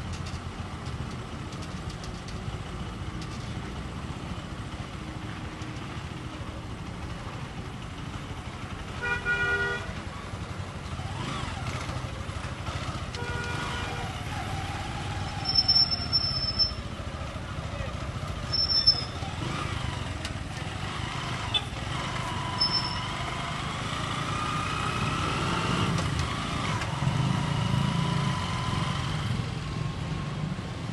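Street traffic: motor vehicles running with a steady rumble, a horn sounding briefly about nine seconds in and again around thirteen seconds. Short high-pitched squeals come around sixteen and nineteen seconds, and an engine's pitch rises and falls near the end.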